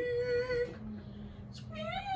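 A girl's high, squeaky call through cupped hands, imitating an animal's cry: one long wavering note for under a second, then a faint low hum, and another call rising near the end.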